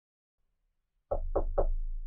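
Three quick knocks on a door, about a quarter second apart, starting about a second in, followed by a low rumble that fades out.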